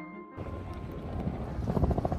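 Wind rumbling on the microphone as a vehicle passes close by, getting louder toward the end.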